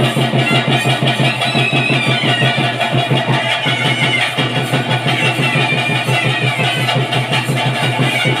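Live ritual music: a nadaswaram playing a wavering, high melody over fast, steady drumming and a low held drone.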